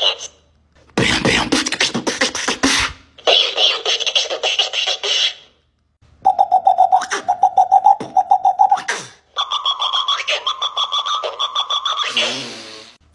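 Human beatboxing traded back and forth with a dancing cactus toy that records and plays it back in a higher, tinny voice. A fast run of percussive mouth clicks and snares comes first, then the toy's replay; later a rhythmic string of pitched vocal pulses is echoed back at a clearly higher pitch.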